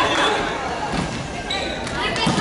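Players' voices and a few dull thuds of a volleyball on the wooden floor of an echoing sports hall, one at the start and one about a second in, with a short high steady tone near the end.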